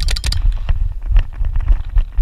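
Paintball markers firing: a fast string of shots right at the start, then scattered, fainter shots. Under them is a low rumble of wind on the microphone.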